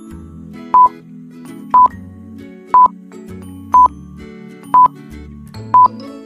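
Electronic countdown-timer beep, a short, loud, single high tone repeating once a second (six beeps), over soft background music.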